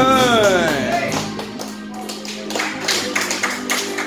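Karaoke backing track of an enka ballad playing an instrumental passage between sung lines, with regular percussion taps. In the first second a single held note rises and falls away.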